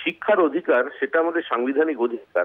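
A man speaking Bengali over a telephone line, his voice thin and narrow as through a phone.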